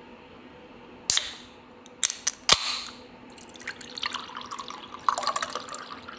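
A drink can opened by its ring-pull: a sharp crack with a short hiss about a second in, then a few clicks and a second, louder crack with hiss at about two and a half seconds. From about three seconds there is steady crackling, and near the end the drink pours over ice into a glass.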